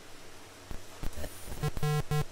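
Faint room hiss, then a few knocks as the round tray of glasses is turned by hand. About a second and a half in, background music starts, with short notes repeated at an even, quick pace.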